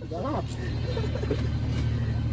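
Steady low drone of a fishing boat's engine, with brief voices of the crew over it.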